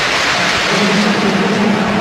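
Football stadium crowd noise, a steady wash of many voices from the stands, with a long held chanted note rising out of it from about a third of the way in.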